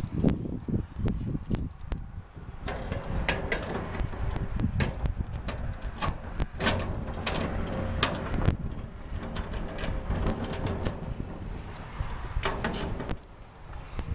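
A padlock and metal hasp on a corrugated metal roll-up storage door being worked to lock it: scattered metallic clicks, knocks and rattles over a steady low rumble.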